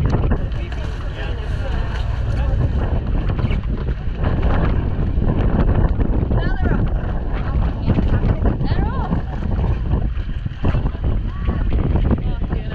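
Steady wind noise on the microphone, with indistinct voices calling out now and then.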